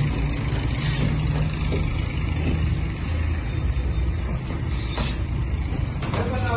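A steady low mechanical hum throughout, with two short hissing bursts, one about a second in and one near the end.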